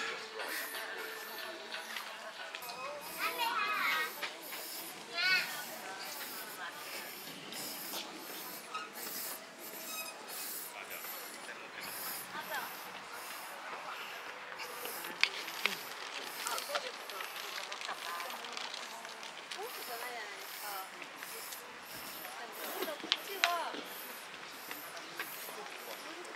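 A person panting hard close to the microphone, short hissing breaths about one and a half a second, out of breath from the long uphill walk.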